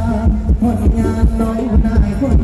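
Live Thai ramwong dance music from a band over a loud sound system, with a heavy bass drum beat about twice a second.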